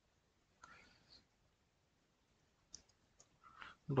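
Computer keyboard typing in a quiet room: a few faint, sharp key clicks late on, after a faint breathy sound about a second in.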